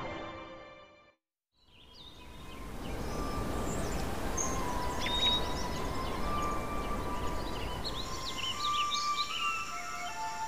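Music fades out in the first second, then after a short silence a forest ambience fades in: a steady background hiss with many short bird chirps and whistles that grow busier toward the end.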